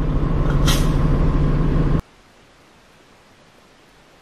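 A vehicle engine idling with a steady low hum, with a brief hiss under a second in. About halfway through it cuts off abruptly, leaving only a faint even hiss.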